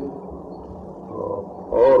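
A short pause in a man's talk, filled with a low, even background rumble from an old lecture recording. A single short spoken word comes near the end.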